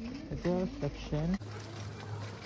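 A low voice singing or humming short sung notes, each sliding down into a held tone. About one and a half seconds in, the sound cuts off abruptly and gives way to a steady low hum under background music.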